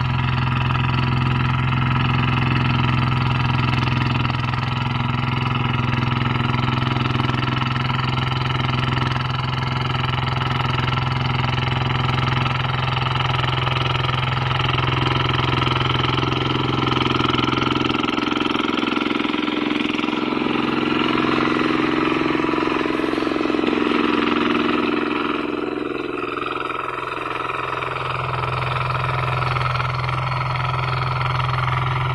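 Single-cylinder diesel engine of a two-wheel hand tractor running steadily under load as it pulls a plough through dry field soil. Its low note weakens for several seconds past the middle, then comes back near the end.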